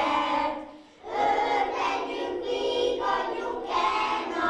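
A group of young children singing a song together, breaking off briefly about a second in between phrases.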